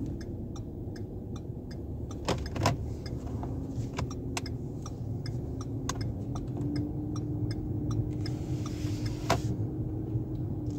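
Inside a car's cabin while driving slowly: low engine and road rumble, with a turn signal clicking evenly about twice a second. A few louder knocks come a little over two seconds in and again near the end.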